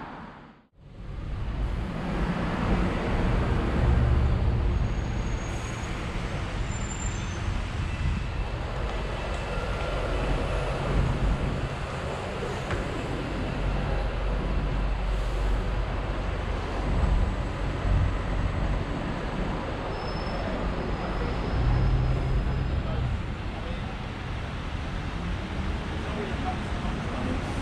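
City street traffic noise: a steady low rumble of passing cars and buses, with a short dropout about a second in.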